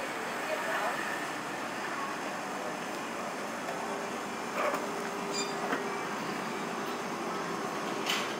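Night street ambience: a steady wash of background noise with faint voices of people nearby and distant traffic. A few short clicks or knocks come about halfway through.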